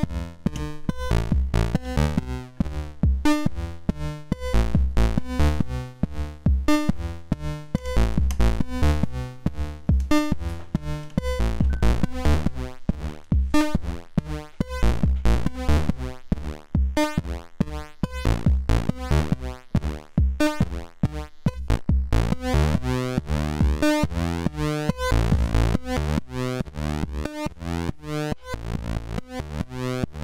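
Eurorack modular synthesizer patch playing a fast, steady rhythmic sequence of short synth notes over deep kick-like bass pulses, run through a Cosmotronic Messor compressor that pulls the level down on the louder hits. About two-thirds of the way through the sound turns brighter.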